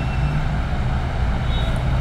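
A steady low rumble with no break, its energy concentrated in the bass.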